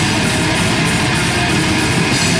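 Grindcore band playing live: distorted electric guitar and bass over a drum kit, with cymbals struck about four times a second.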